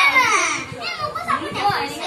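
Several young children talking and calling out over one another, with a loud high call falling in pitch at the start.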